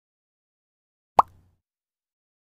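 A single short pop sound effect for an animated logo intro, about a second in, its pitch sweeping quickly upward like a 'bloop'.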